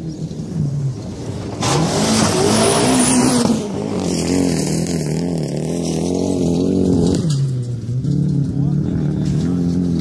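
Rallycross car engine revving hard on a loose dirt-and-gravel course. It passes close about two seconds in with a loud burst of tyre and gravel noise, then the engine note rises and falls over and over, dipping briefly near the seven-second mark before climbing again.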